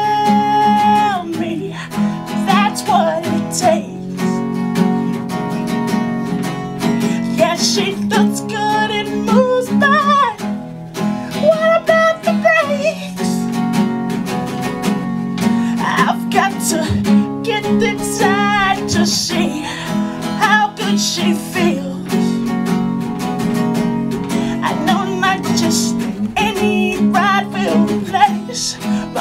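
Acoustic guitar strummed steadily under a man singing, with long held notes and sliding, wavering vocal runs in several places.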